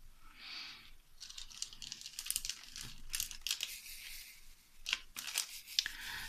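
Small plastic handling noises of diamond painting: quick scratchy rustles and sharp little clicks as a wax pen picks resin drills out of a plastic tray and presses them onto an acrylic suncatcher.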